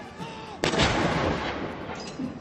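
A ceremonial field gun firing one round of a gun salute: a single sudden boom about half a second in, rolling away over the next second.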